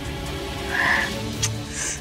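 Background drama score with steady held low tones, and a short higher-pitched sound just before a second in.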